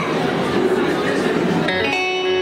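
Guests chattering in a reverberant hall over music with plucked strings; about three-quarters of the way in, a steady held note with many overtones sets in.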